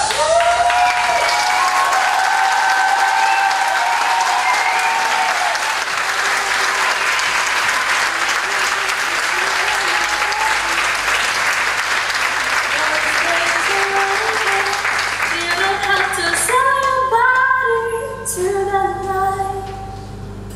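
Audience applauding over music with singing; the applause thins out near the end while the music carries on.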